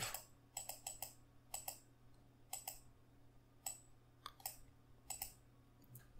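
Faint computer mouse clicks, about six of them roughly a second apart.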